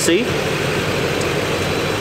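Chevrolet Duramax 6.6-litre LMM V8 turbo-diesel idling steadily.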